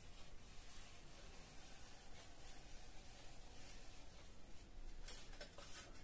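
Faint scratch of a felt-tip permanent marker drawn slowly along a spirit level over a painted drywall board, with a few light knocks near the end.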